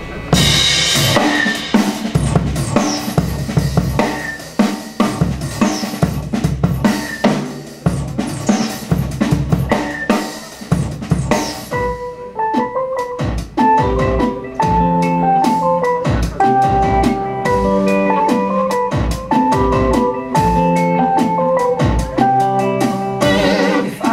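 A live rock band plays the instrumental opening of a song. The drum kit comes in with a cymbal crash just after the start and keeps a steady beat with crashes about every two seconds. About halfway through, guitar and keyboard notes join over the drums.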